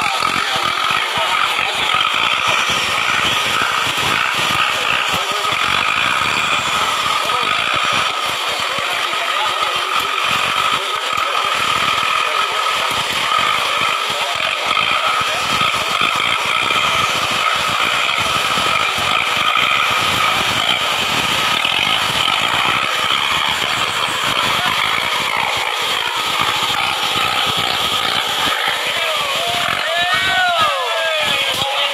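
Off-road 4x4's engine running: a steady, unbroken drone with a whine running through it.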